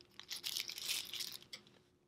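A model-rocket parachute crinkling and rustling in the hands as it is pulled out and spread open. It runs for about a second and a half as a string of fine crackles, then stops.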